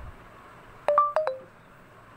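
Android phone's Google voice search chime: a short electronic tone pattern stepping down in pitch, about a second in. It signals that voice recognition has stopped listening with an error, here 'Network not connected'.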